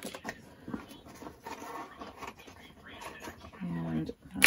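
Light clicks, taps and rustles of small items being taken out of a handbag and set down on a hard shelf, with a short voiced sound near the end.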